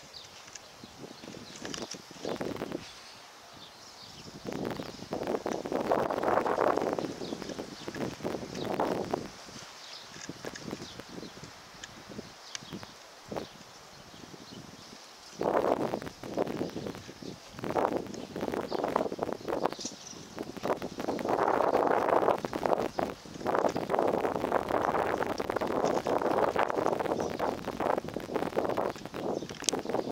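Gusting wind, rising and falling in rustling surges of a few seconds with calmer gaps between them, the biggest gusts about six seconds in and again from about fifteen seconds on.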